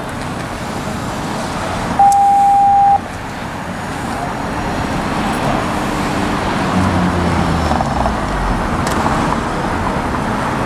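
Street traffic noise, with passing cars growing louder in the second half. About two seconds in, one steady high electronic beep sounds for about a second and cuts off suddenly.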